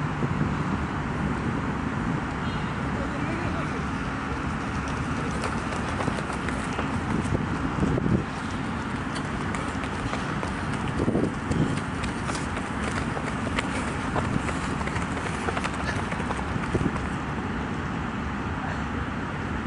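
Soccer players shouting and calling to each other across the pitch, loudest about eight seconds in and again near eleven, with scattered sharp knocks over a steady outdoor background noise.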